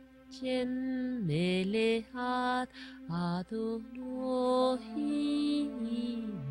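A slow sung mantra: a voice holding long notes, sliding down and back up between them, over a steady low drone.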